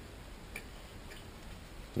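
A few faint, brief clicks over low steady background hiss.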